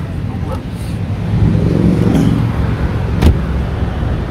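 Audi A3's engine idling with a steady low rumble, with a single thump about three seconds in.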